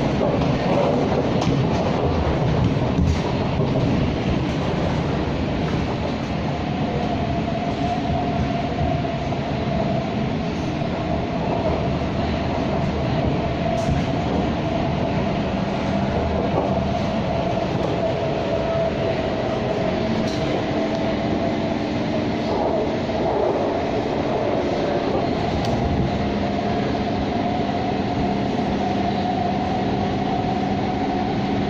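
Electric metro train heard from inside the passenger car while it runs along the track: a steady rumble of wheels and running noise. From about a quarter of the way in, a steady high whining tone runs over it, and a few faint clicks come through.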